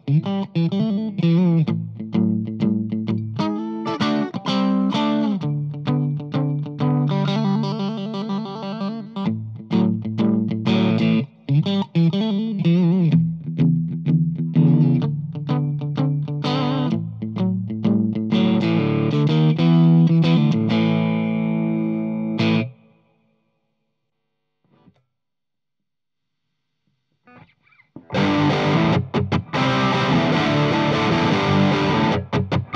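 LTD SN-1000W electric guitar played through a Blackstar ID:Core Stereo 150 combo amp with a little reverb, a riff of single notes and chords. About three-quarters of the way through it cuts off abruptly; after a few seconds of silence a brighter, denser guitar tone starts near the end, the amp set to another of its voices.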